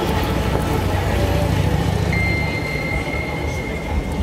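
Sound-design passage in a synthwave instrumental: a dense, rumbling noise with little clear melody. A steady high tone joins about halfway through.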